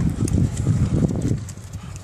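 Donkeys moving about on a paved street, hooves clopping, over a low rumbling noise that fades after about a second and a half.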